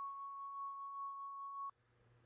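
A single steady electronic beep, one held tone in the video-game-style backing track, that cuts off suddenly shortly before the end.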